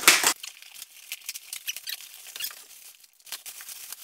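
Small cardboard box being opened and the plastic wrapping inside handled: a short louder rustle at the very start, then faint crinkling and small clicks and squeaks of plastic and cardboard.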